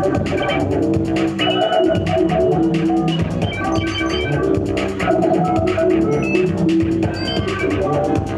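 Live electronic music played on a tabletop synthesizer and drum machine: a fast, steady ticking beat under held synth tones that change every second or so.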